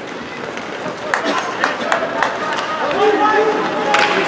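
Ice hockey game heard from the stands: a few sharp clacks of sticks and puck in the first half, then shouting voices near the end over the arena's background noise.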